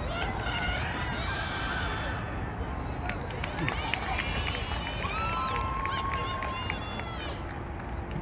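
Shouts and calls from players and spectators at an outdoor soccer match, with no clear words, over a steady low background rumble. Partway through, one voice holds a long drawn-out call for about a second and a half. A few sharp taps are scattered through the middle.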